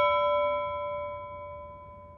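A bell-like chime ringing out after a single strike, several clear tones fading away together over about two seconds.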